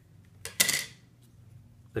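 A single short clack of hard plastic about half a second in, the backwater valve's plastic gate being set down on the table.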